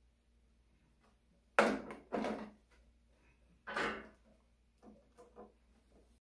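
Hard plastic parts of a Roomba S9 self-emptying base knocking together as a molded plastic piece is fitted onto the base's housing by hand: three louder knocks, then a few light clicks near the end.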